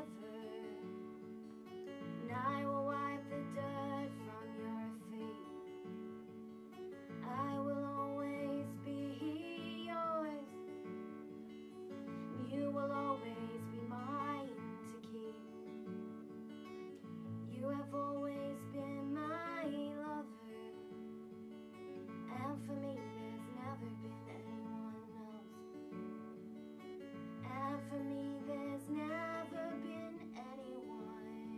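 Solo steel-string acoustic guitar played in a steady repeating pattern, with a woman singing long, sliding phrases over it every few seconds.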